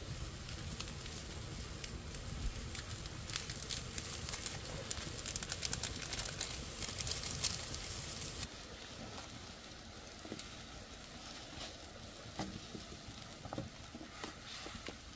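Broth at a hard boil in a large aluminium wok over a wood fire, bubbling, with the burning wood crackling. About eight seconds in the sound drops abruptly to a quieter simmer with occasional crackles and clicks.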